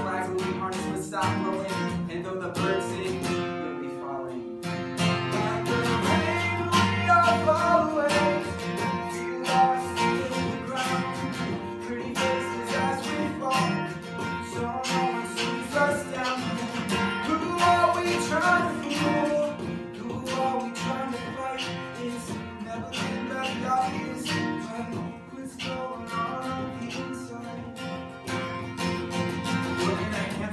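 Live acoustic guitar strumming with a harmonica playing the melody over it, an instrumental break between sung verses.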